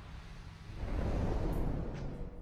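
A low, noisy rumble swells up about a second in and eases off near the end: an ambient sound effect in the intro.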